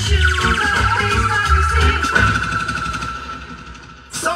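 Recorded music with heavy bass played loud through a Jamaican sound system's speakers. The bass drops out a little past two seconds in and the music fades down over the last two seconds.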